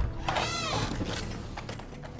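A cat meows once, a short call that rises and then falls in pitch, just after the tail of a loud crash.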